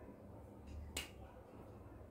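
A single sharp click about a second in over a faint low room hum: a felt-tip marker's cap being pulled off.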